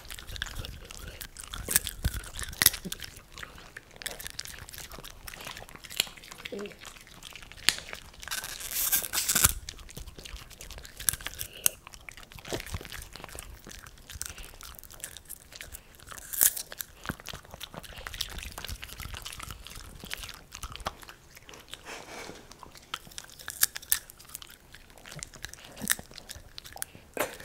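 Italian greyhounds crunching and chewing popcorn right at a microphone, in irregular bursts of sharp crunches, with a longer spell of crunching at about 8 to 9 seconds in.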